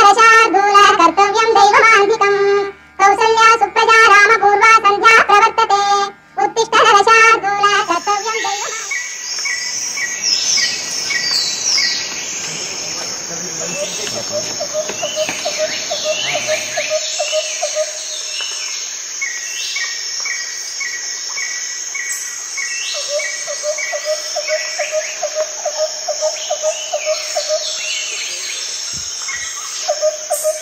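A song with singing ends abruptly about eight seconds in. From there to the end, the sound is outdoor forest ambience: insects buzzing steadily at a high pitch, birds chirping, a run of quick repeated calls, and twice a lower warbling trill.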